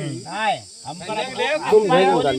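Men talking in rising and falling voices, with a steady high-pitched hiss running underneath.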